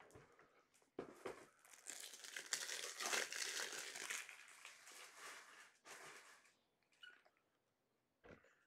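Trading-card pack wrapper crinkling as it is handled and torn open. The rustling starts about a second in, is loudest in the middle and fades out before the end.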